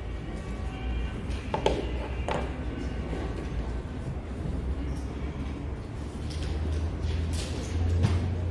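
Steady low hum of a lecture room, with two sharp knocks about one and a half and two and a quarter seconds in and a few fainter clicks later.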